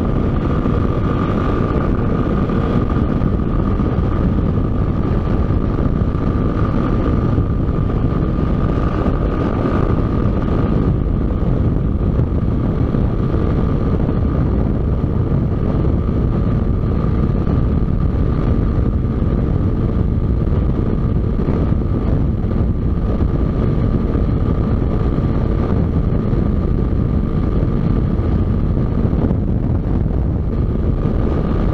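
Motorcycle cruising at steady highway speed: engine running with heavy wind rush on the microphone, and a steady high whine running underneath.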